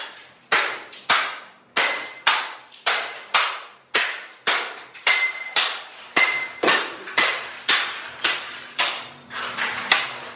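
Baseball bats repeatedly smashing black plastic electronics on a concrete floor, about two hard blows a second, each cracking sharply and dying away quickly. A few blows leave a brief ringing tone.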